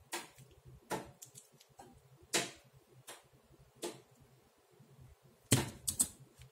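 Plastic twisty puzzles being handled and set down on a desk mat: a handful of separate clicks and knocks, the loudest about two and a half and five and a half seconds in.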